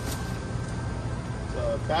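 Steady low rumble of outdoor street background noise. A man's voice starts near the end.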